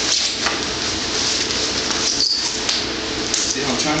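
Wrestlers scuffling and shifting their grip on a vinyl wrestling mat, over a steady hiss, with a brief high squeak about two seconds in.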